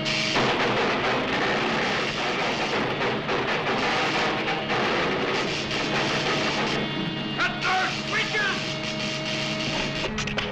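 Orchestral cartoon score playing over a dense, continuous noise of sound effects, with a few short sliding notes near the end.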